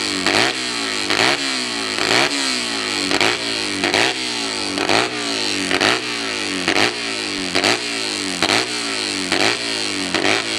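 Hillclimb motorcycle engine blipped over and over at the start line, the revs jumping up and falling away about once a second.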